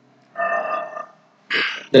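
A man's short wordless vocal sound, a held vowel-like noise about a third of a second in, then a brief breathy hiss just before he speaks again.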